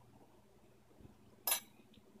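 Mostly quiet, with one short clink of a spoon against a glass jar about a second and a half in.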